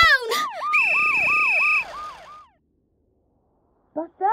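Cartoon police-car siren effect: a falling wail repeated about three to four times a second, with a steady high tone over part of it. It fades out about halfway through, and a short click comes near the end.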